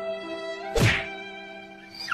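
Background music with held notes, cut by one loud whack about a second in.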